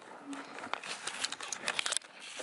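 Tinker horse eating feed out of a plastic bucket: irregular crunching and rustling clicks, coming thicker toward the end.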